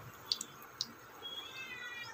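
A couple of light clicks of a steel ladle against an aluminium pan, then a faint, short, high-pitched wavering call near the end.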